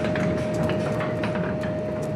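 Steel anchor chain running out over the windlass wheel, a dense continuous rattling and grinding of links against the teeth, with a steady hum underneath.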